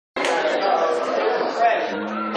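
Crowd chatter in a large room, many voices talking at once, cutting in abruptly a moment in after a split second of silence.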